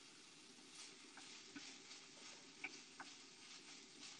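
Faint sizzle of chopped onions softening in a frying pan, with a few light ticks.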